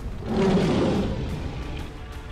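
A tiger's growl, rough and low, starting a moment in and lasting about a second before fading, over background music.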